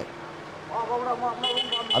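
Roadside street noise with a voice talking in the background from a little way in, and a steady high-pitched tone starting about two-thirds of the way through.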